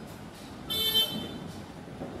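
A vehicle horn gives one short, high-pitched toot of about half a second, a little under a second in.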